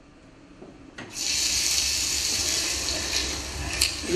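Water running steadily from a tap, starting about a second in after a brief near-quiet pause.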